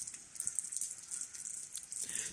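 Rain falling: a steady high hiss dotted with many small drop ticks.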